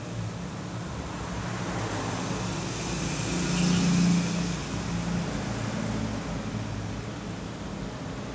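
Road traffic: a passing vehicle's engine and tyre noise grows louder to a peak about halfway through, then fades back to a steady background rumble.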